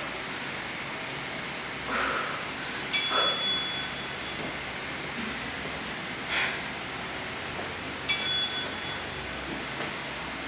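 A small bell chime rings twice, about five seconds apart, each a short bright ring that fades within about half a second. It is an interval-timer signal for the change from one exercise to the next.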